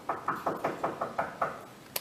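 Knuckles knocking rapidly on a locked restroom door, a quick run of about eight knocks that stops about a second and a half in.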